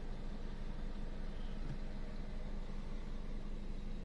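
Car engine idling, a low steady hum heard from inside the cabin of the parked car.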